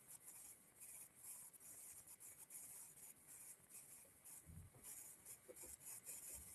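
Near silence: faint, high, scratchy rustling that comes and goes, with a soft low thump about four and a half seconds in.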